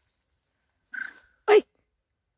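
A single short animal call about a second in, ending in a brief high steady note, followed at once by a woman's louder startled cry of "Ay!".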